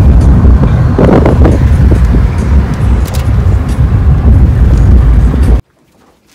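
Car driving through city streets, heard from inside: a loud, uneven low rumble of road and wind noise that cuts off suddenly near the end.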